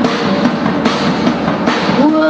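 Psychobilly rock-and-roll recording in a break between sung lines: the drum kit plays a fill while the band keeps going.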